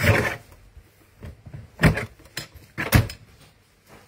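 Rexel ClassicCut guillotine trimmer's blade arm chopping down through stamp rubber onto the base: two sharp clunks about a second apart, with lighter knocks between them.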